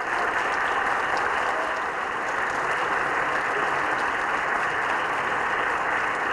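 Steady applause from the assembled senators and guests, a dense even clatter of many hands that holds at one level throughout.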